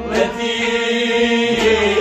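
A man singing a Kashmiri Sufi song in a long, chant-like held line over a steady harmonium drone.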